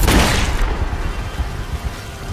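A gunshot right at the start, a loud crack that rings out and dies away over about half a second, over background music from the film's soundtrack.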